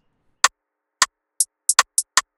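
Sparse drum-machine hits from FL Studio rim and hi-hat samples: about six short, sharp clicks at uneven spacing, some thin and very high. They are played back with the channel's Mod Y resonance filter turned up, which makes them crisp.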